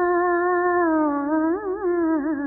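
A woman singing one long wordless note, held steady, then dipping slightly in pitch and breaking into a quick wavering ornament near the end.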